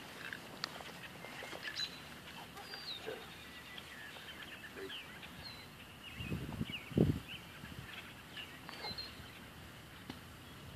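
Faint outdoor background with scattered short bird chirps, and a brief low rumble about six to seven seconds in that is the loudest sound.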